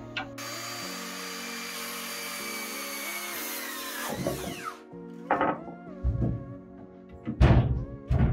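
Cordless circular saw cutting through a wooden board, running for about four and a half seconds and winding down with a falling whine. Several sharp wooden knocks follow over background music.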